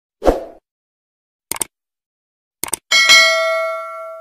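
Subscribe-button animation sound effects: a short burst just after the start, a click about a second and a half in, two quick clicks near the end, then a bright notification-bell ding that rings on with several tones.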